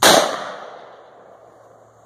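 A single rifle shot, sharp and loud, right at the start, its echo trailing off over about a second.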